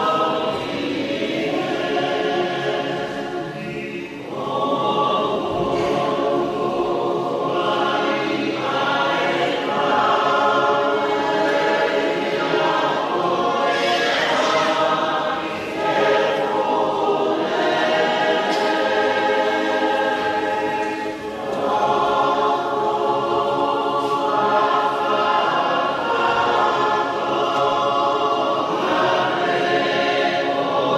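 Church choir singing a hymn in parts, with long held phrases and short breaks between them about 4, 16 and 21 seconds in.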